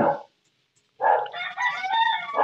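A rooster crowing: one long drawn-out call that starts about a second in.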